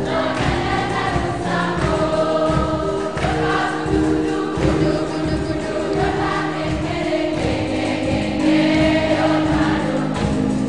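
Church choir singing a hymn, voices holding and moving between notes, with a steady beat underneath.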